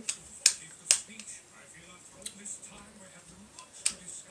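Plastic parts of a UK Arms 8946 spring airsoft pistol being handled and fitted back together: two sharp clicks about half a second apart near the start, then a few fainter clicks and one more near the end.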